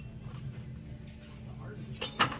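Quiet shop background: a steady low hum with faint voices, and no clear handling noise.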